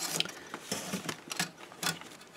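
Cellophane-wrapped sticker sheet and catalogue pages being handled: a handful of short, separate crackles and clicks.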